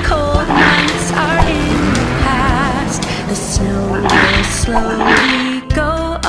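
Children's nursery-rhyme song: a voice singing the lyrics over an instrumental backing track with a steady bass line.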